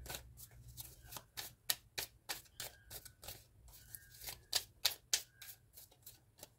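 A deck of cards being shuffled by hand: a quick, irregular run of soft card clicks and flicks, several a second.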